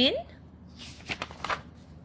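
A paper page of a picture book being turned by hand: a few short rustles about a second in.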